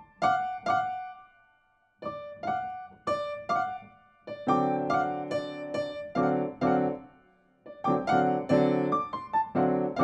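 Piano played in short detached phrases: a few quick right-hand notes, a pause of about a second, then single notes joined about four seconds in by fuller chords with bass notes, in two bursts of short chords with a brief break between.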